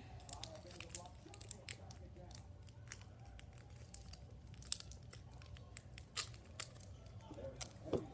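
Light crinkling and scattered sharp clicks of a candy bag being handled, the loudest click a little before halfway through.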